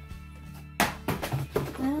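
Steady background music, with a sharp crackle of handled plastic packaging about a second in, followed by a brief rustle.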